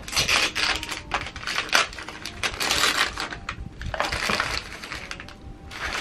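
Wrapping paper crinkling and tearing as it is pulled off a small, heavily taped gift box, a dense crackle that dies down about five seconds in.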